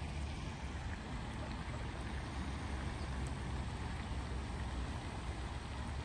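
Steady low rumble and hiss of wind buffeting a phone microphone outdoors, with no distinct calls or events standing out.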